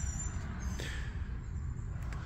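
Low, uneven rumble of wind and handling noise on a phone microphone while it is carried along the boat, with a faint tick a little under a second in.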